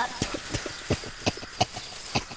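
Rapid, uneven clacking: hard, sharp clicks about six times a second.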